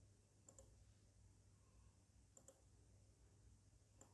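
Near silence: room tone with a steady low hum and two faint double clicks, about half a second in and a little past the middle.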